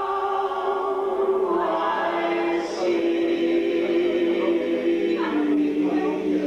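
Mixed group of two women and two men singing a folk song in close harmony, holding long sustained notes that move to new chords about a second and a half in and again near the end.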